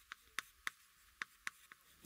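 Chalk writing on a chalkboard: about six short, faint, irregular taps and scratches as the chalk strokes out letters.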